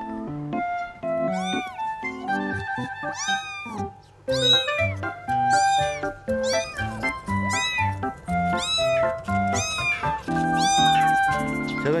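Young kittens mewing: short, high-pitched calls that rise and fall, about one a second, over background music with steady held notes.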